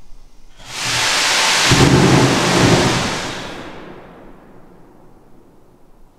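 Paraffin-wax and nitrous-oxide hybrid rocket motor firing on a static test stand: a loud rushing noise starting about a second in, lasting about three seconds and then dying away. The burn is short because the oxidiser valve was still timed to open for two seconds instead of five.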